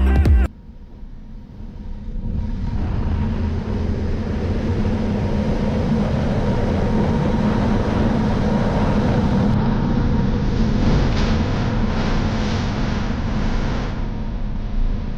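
KTM 1290 Super Adventure R's V-twin engine running at a fairly even pace under a steady rush of wind, heard from a camera on the moving bike. It fades up about two seconds in, just after music cuts off.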